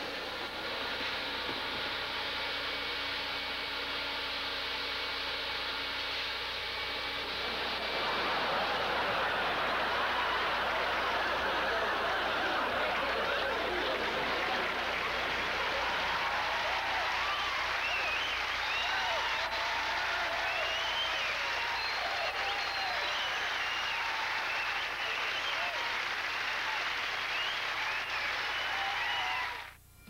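A hose vacuum cleaner running with a steady hum and whine. About eight seconds in it is swamped by a studio audience laughing and applauding, which goes on until it cuts off suddenly near the end.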